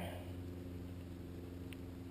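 Quiet steady low hum of background noise, with one faint click near the end.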